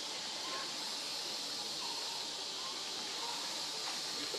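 Steady high-pitched hiss of outdoor ambience, with faint distant voices now and then.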